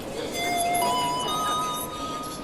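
Three-note public-address chime, each note higher than the last and ringing on, the signal that an announcement is about to follow.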